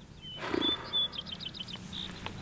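A brief low animal roar about half a second in, followed by high chirping calls: a few whistled notes, then a quick trill of short notes.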